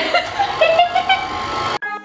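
KitchenAid Artisan stand mixer motor running at low speed with the paddle beating cookie dough, a steady whine that creeps up slightly in pitch, with laughter over it at the start. It cuts off suddenly near the end.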